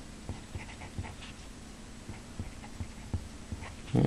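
Marker pen writing on a whiteboard: faint scratching strokes with a few light taps of the tip against the board.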